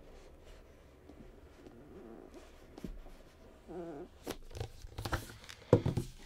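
Soft, quiet rubbing and rustle of a cardboard laptop box lid being slid off its base, with a few light handling taps in the second half.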